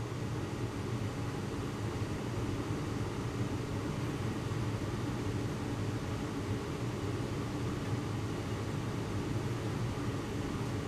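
Biological safety cabinet's blower running, a steady hum with an even rush of air drawn through the cabinet.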